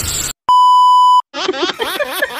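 A single steady electronic beep, under a second long, then a baby laughing and squealing in quick wavering bursts.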